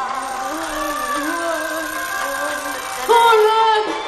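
A woman wailing in drawn-out, sung-sounding notes while sweltering in a steam-bath cabinet. About three seconds in, her voice jumps higher and louder.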